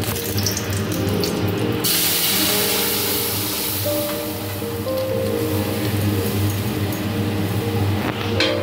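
Loud hissing sizzle as cooked dal is poured into hot oil tempered with dried red chillies in a kadai, starting about two seconds in and slowly dying away. Background music with held tones plays throughout.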